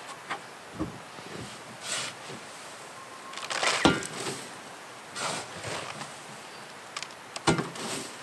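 Handling of a plastic compost bin at its top: scattered knocks and scraping or rustling, with the loudest knock about four seconds in.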